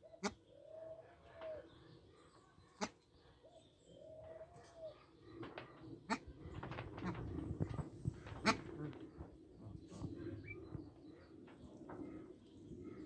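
Bar-headed geese giving two soft, drawn-out calls about three seconds apart, each rising and then falling slightly in pitch. Later come a few sharp clicks and a stretch of rustling.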